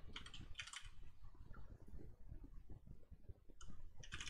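Faint typing on a computer keyboard: a few short runs of keystrokes as a word in the code is retyped.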